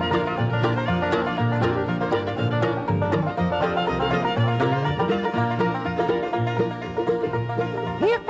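Bluegrass band playing an instrumental introduction: two fiddles, mandolin and five-string banjo over an upright bass playing a steady, even beat.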